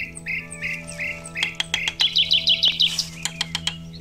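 Small birds chirping in a regular series of short calls, turning into a faster, higher run about halfway through. Over the second half come many sharp taps of a knife against a bamboo stem.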